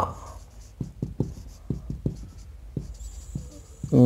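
Marker pen writing on a whiteboard: a run of short, irregular strokes and taps as a word is written out.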